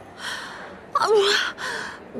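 A young woman's wordless vocal sounds: a breathy gasp, then a short voiced sound about a second in, then another breath. She is straining to speak but cannot get words out, having been struck mute.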